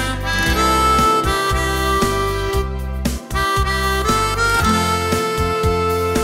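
Harmonica playing a slow melody of long held notes over a steady bass line: the instrumental intro of a schlager song.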